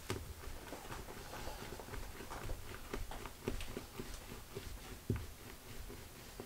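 Faint handling noise of a polymer clay cane being rolled under the fingers on a tabletop: light irregular taps and rubbing, with a soft thump about five seconds in.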